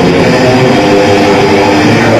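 Death metal band playing live, led by distorted electric guitar, loud and continuous without a break.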